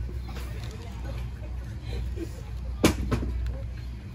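A steady low rumble with faint voices in the background. About three seconds in there is a sharp knock, followed quickly by a lighter second one.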